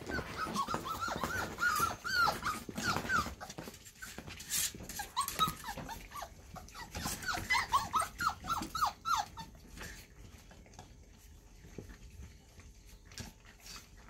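A litter of four-and-a-half-week-old Scotch collie puppies whining and squeaking in quick, short, falling cries as they crowd a food bowl, in two spells that die down near the end, leaving faint clicking eating noises.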